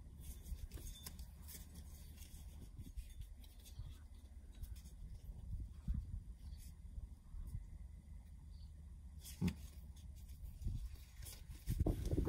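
Faint handling of a deck of paper playing cards: cards being fanned and spread, with scattered small clicks and one sharper snap about nine and a half seconds in, over a steady low rumble of wind noise on the microphone.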